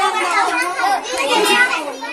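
Young children's high-pitched voices talking and calling out.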